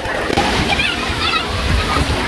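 Shallow sea surf sloshing and splashing around people wading through it, with voices calling out over the water.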